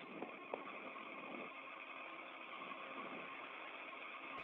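Faint, steady hiss on the open space-to-ground radio channel, with two small clicks within the first second.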